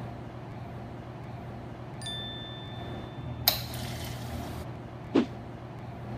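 A soda fountain dispensing briefly: a hiss of about a second, starting suddenly about three and a half seconds in. Before it a thin steady high tone sounds for about a second and a half, and a sharp click follows near the end, over a steady low hum.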